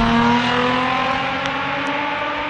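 A motor vehicle's engine running, its pitch rising slowly and steadily.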